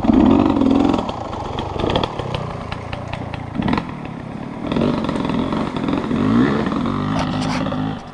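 Dirt bike engine running and being revved, its pitch rising just after the start, easing off, then climbing again in the second half as the bike pulls away slowly. Scattered short clicks and rattles sound over the engine.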